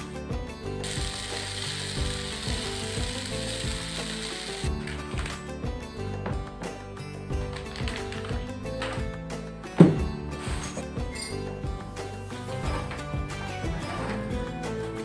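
Background music with a clicking beat. For a few seconds near the start, diced vegetables sizzle in a frying pan. One sharp thump comes about ten seconds in.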